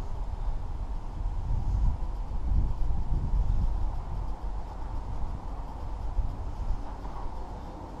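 Outdoor wind buffeting the camera microphone as a low, uneven rumble that swells and fades, with a faint steady tone underneath.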